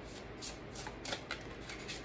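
A tarot deck shuffled and handled in the hands, a quick run of crisp, papery card flicks while a card is drawn.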